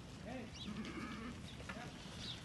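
Aardi goats and kids bleating: several short calls, one after another and overlapping.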